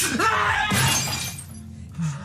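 Glass shattering in two sudden crashes about 0.7 s apart, over dramatic music.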